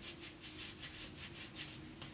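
Quiet pause: faint room tone with a low, steady hum.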